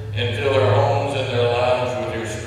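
Liturgical chanting: voice held on steady, sustained pitches.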